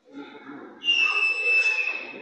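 A single high, steady whistle note lasting about a second, sliding slightly lower as it ends, over the murmur of a crowd.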